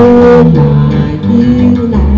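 Guitar playing an instrumental phrase of cải lương accompaniment between sung lines, with melody notes moving over lower notes. A strong held note opens it.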